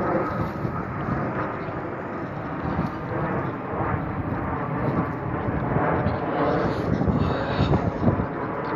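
Fixed-wing airplane passing overhead, a steady rumble that grows louder through the second half.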